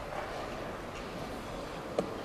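Steady room noise of a busy tournament playing hall, with a single sharp click near the end.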